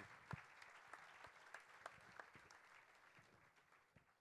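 Audience applauding faintly, the scattered claps fading away near the end.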